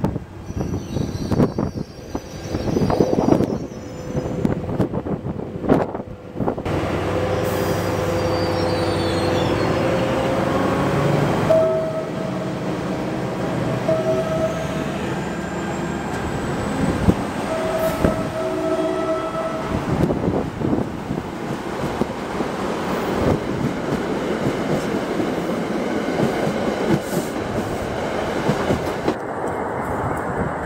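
An NJ Transit ALP-45DP locomotive runs close by on diesel power, its engine running steadily as it pulls out with its train rumbling past. A train horn sounds long blasts through the middle, the last two ending around two-thirds of the way in.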